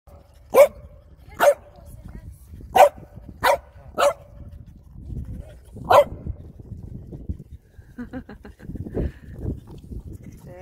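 French bulldog barking: six short, sharp barks, irregularly spaced, over the first six seconds.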